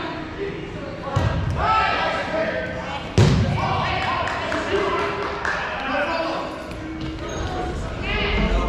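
Players' voices calling and chattering in a gymnasium, mixed with thuds of balls hitting the gym floor. The loudest thud comes about three seconds in.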